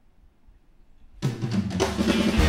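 A live rock band on electric guitars, bass and drum kit comes in all at once about a second in, starting a song loudly after a moment of near silence.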